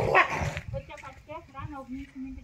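Raised voices in a commotion, opening with a sudden loud noisy burst, then a run of short, quick, high-pitched calls.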